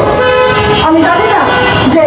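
A woman speaking into a microphone over a loudspeaker, with vehicle horns sounding steadily in street traffic behind her.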